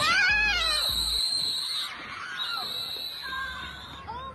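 Children yelling and screaming, loudest in the first second and fading away, over a steady high-pitched tone.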